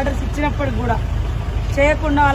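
A person talking in Telugu over a steady low hum of an engine running nearby.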